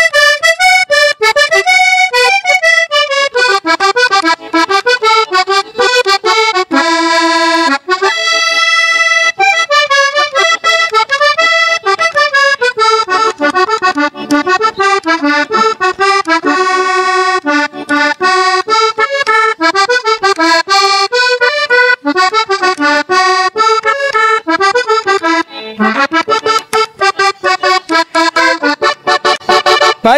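Diatonic button accordion played solo: a lively, fast-moving instrumental introduction to a porro, with quick runs of melody notes over the bass.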